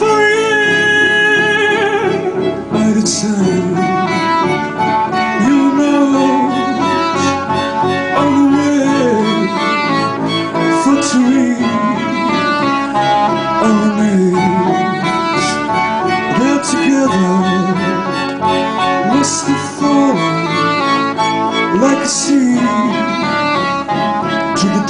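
Live chamber-pop ensemble of clarinets, violins and cello playing, with sliding string lines and a sharp accent every few seconds.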